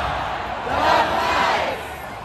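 Football stadium crowd shouting together, swelling to a loud yell about a second in.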